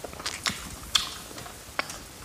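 Close-miked eating sounds: a few sharp, separate wet mouth clicks and smacks while chewing soft food, the loudest about a second in and another near the end.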